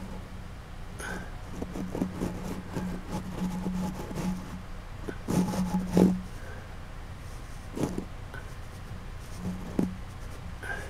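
Small handling noises, scrapes, taps and clicks, as a thin wire tool works a small sculpted head, with a cluster of louder knocks about five to six seconds in. Under them runs a low hum that comes and goes.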